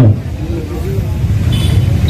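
A steady, loud low rumble in a short break in a man's speech into a handheld microphone.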